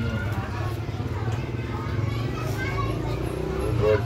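Children's voices and chatter in an open yard, over a steady low hum, with one voice louder near the end.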